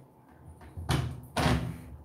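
A spatula knocking and scraping against a glass mixing bowl while stirring thick, sticky brownie batter, loud twice about half a second apart.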